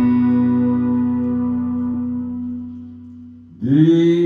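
Sustained, droning guitar notes held steady and slowly fading out. Near the end a male voice comes in loudly with a long, chant-like sung note.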